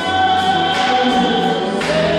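A woman singing live into a microphone over musical accompaniment, holding one long note; near the end a short breathy sound comes in and the note moves slightly lower.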